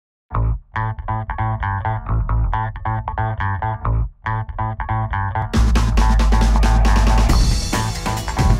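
Background music: a plucked guitar-and-bass riff, with a full band and drum kit coming in about five and a half seconds in.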